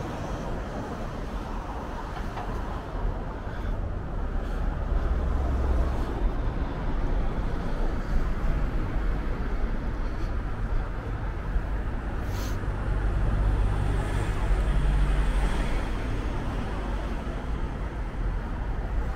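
Street traffic: a steady low rumble of passing cars and trucks, swelling near the end as a heavier vehicle goes by, with one brief sharp click about twelve seconds in.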